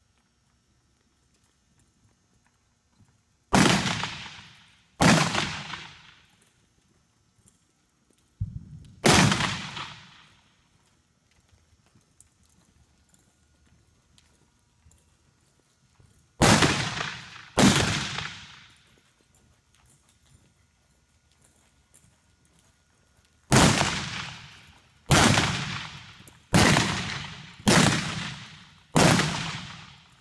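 Single-action revolvers firing black-powder blanks at balloon targets from horseback in cowboy mounted shooting: ten loud shots, each ringing off the walls of a metal indoor arena. They come as a pair, then a single shot with a fainter crack just before it, then another pair, then five in quick succession, about a second and a half apart, near the end.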